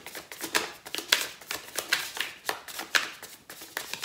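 A deck of tarot cards being shuffled by hand: a run of irregular, quick card slaps and riffles.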